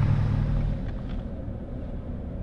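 Steady low engine and road rumble heard inside a pickup truck's cab, easing off about a second in as the truck slows.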